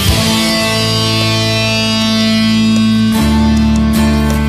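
Indie rock band playing an instrumental passage: a guitar chord is held and rings out, then about three seconds in the bass and drums come back in on a new chord.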